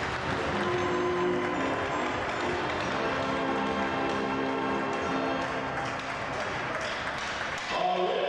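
Music with held chords, mixed with the voices of a crowd.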